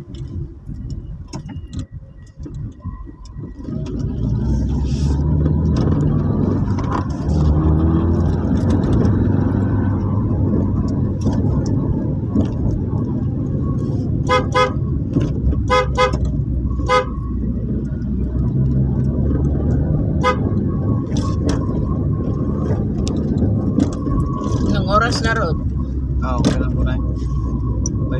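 Car running at low speed, its engine and road rumble heard inside the cabin, with a quick run of short horn toots, about five beeps in under three seconds, around the middle.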